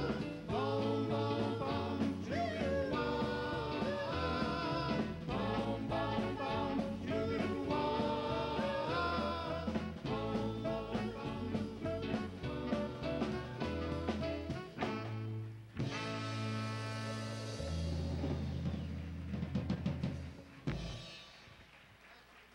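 Doo-wop vocal group singing close harmony live over a backing band with drum kit. About sixteen seconds in, the song closes on a long held final chord that dies away near the end.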